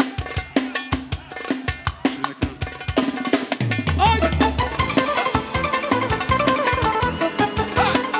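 A live Romani dance band playing. A drum kit keeps a beat on its own, then about four seconds in the bass and a gliding melody line come in as the full band joins.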